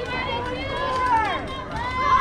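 Several high-pitched voices calling out during a girls' softball at-bat: drawn-out shouts that rise and fall in pitch, overlapping one another.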